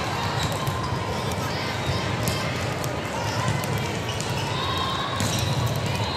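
Volleyball-hall ambience: balls thudding and bouncing on the courts amid indistinct voices of players and spectators, carrying in a large hall.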